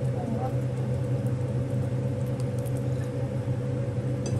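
A steady low machine hum with a constant pitch, like a motor or fan running, unchanged throughout.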